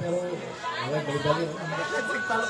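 People talking, a general chatter of voices, with no music playing.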